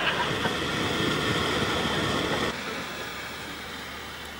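Steady rumbling, crackling noise of a small fire burning along a cable or pipe on a wall, dropping in level about two and a half seconds in.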